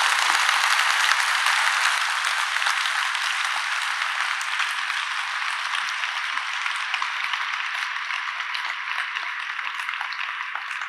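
Audience applauding, loudest at the start and then slowly dying down.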